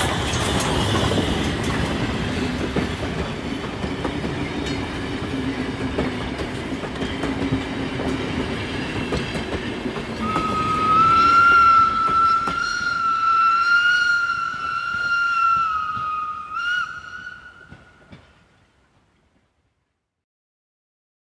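Steam train running, then a long whistle held for about six seconds from about ten seconds in, wavering slightly; the sound fades out near the end.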